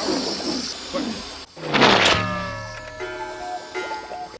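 Comedy film soundtrack from the VHS clip: a loud noisy rush about halfway through, followed by several falling tones, then light music.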